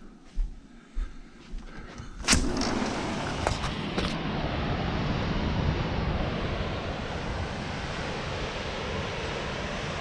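A few soft footsteps, then a sliding glass door opened with a sharp clack about two seconds in. Ocean surf and wind on the microphone follow as a steady rushing noise.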